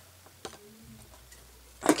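A dresser's doors being shut: a light click about half a second in, then a loud sharp knock as a door closes near the end.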